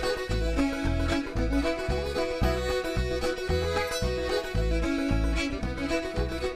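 Old-time string band playing an instrumental break: fiddle, clawhammer banjo, button accordion and upright bass, with the bass plucking about two notes a second under the melody.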